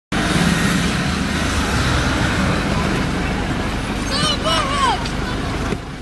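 Shouting voices over a steady rumbling noise, with a few high, bending shouts between about four and five seconds in.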